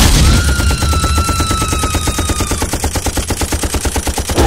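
Machine-gun fire sound effect: a rapid, even stream of shots, about a dozen a second. A high held tone runs over the shots for the first two and a half seconds.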